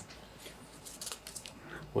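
A lull in a small meeting room: faint room tone with a few soft clicks and rustles from the second half on.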